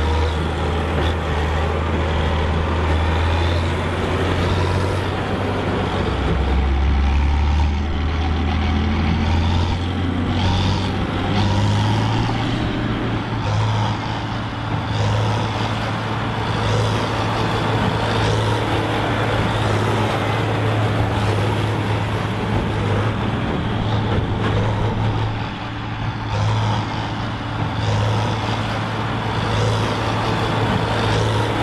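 Tractor engine running steadily with a low, even hum; about eleven seconds in the engine speed picks up and then holds at the higher pitch.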